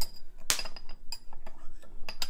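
A metal teaspoon clinking against a ceramic sugar bowl as sugar is scooped out. A handful of short clinks with a light ring; the loudest comes about half a second in.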